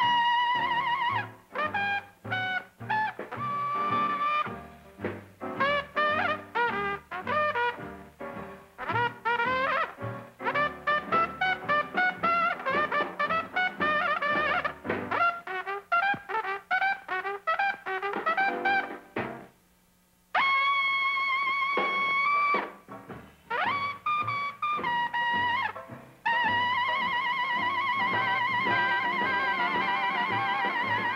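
Jazz cornet playing a blues solo over a small band's bass and rhythm. It moves in quick runs of bending notes, stops briefly about two-thirds through, then rips up to long high notes held with a wide vibrato.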